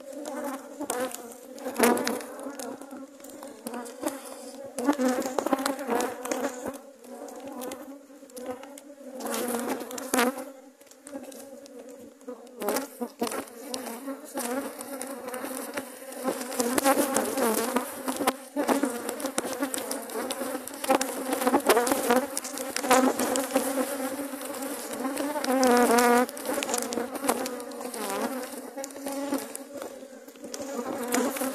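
Honeybees from a strong colony buzzing densely over an open hive, with single bees passing close by and their pitch wavering up and down. A few sharp knocks of the hive frames being worked sound through it.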